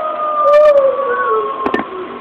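A single long wolf-style howl, held and sliding slowly down in pitch, with a couple of sharp knocks near the end.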